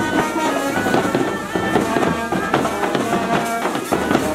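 Pipe band playing: bagpipes carry the melody over bass drum beats, with a brass horn in the band.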